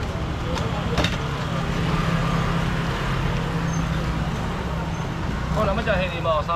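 Busy street-market ambience: a steady low engine-like hum under a haze of background chatter, with a couple of sharp knocks about a second in and a voice starting near the end.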